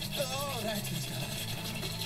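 Faint speech from a cartoon character, one short utterance whose pitch rises and falls, over a steady low background tone.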